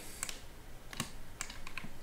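A few light, irregularly spaced clicks from computer input while an item is chosen in software.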